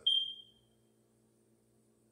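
A single short, high-pitched beep that starts sharply and fades away within about half a second.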